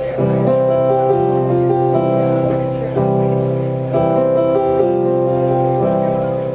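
Electric stage keyboard playing sustained piano chords, a new chord about every second: the introduction to a slow country ballad, before the vocal comes in.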